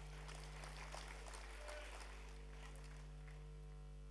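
Quiet room tone of a large hall: a steady low hum with faint scattered background noise, and no clear event.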